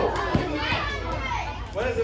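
A group of children talking and calling out over each other in a large, echoing hall, with one short knock a little way in.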